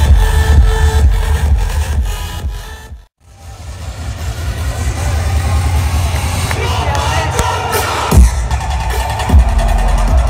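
Loud live electronic dance music with heavy bass through a large concert sound system, heard from within the crowd. It fades out to a brief silence about three seconds in, then crowd noise and music build back up, and a heavy bass hit lands about eight seconds in as the bass-heavy music resumes.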